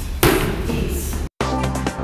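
A single sharp smack of a child's kick landing on a padded kickboxing focus mitt. About two-thirds of the way in the sound cuts out for an instant, then electronic music starts.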